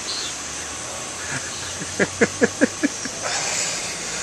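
A man laughing, a quick run of about seven short "ha" bursts about halfway through, followed by a breathy exhale, over a steady low hum.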